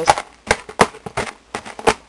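A metal spoon knocking and scraping in a plastic tub of homemade powder laundry detergent, breaking up clumps: about seven sharp, irregular clicks.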